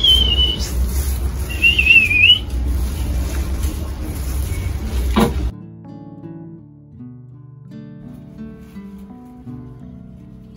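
A loud low rumble on the microphone with two short, wavering high whistles in the first couple of seconds. It cuts off sharply after about five and a half seconds and gives way to quieter plucked-guitar background music.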